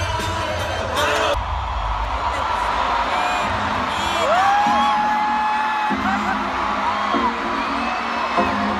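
Live arena concert music heard from among the crowd, with a singer's voice over it. About four seconds in, the voice slides up into one long held note lasting about two seconds. A little over a second in, the sound changes abruptly as the close, bass-heavy sound drops away.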